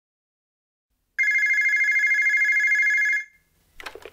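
A telephone ringing: one steady, rapidly warbling electronic ring about two seconds long, starting about a second in, followed near the end by a few short clicks.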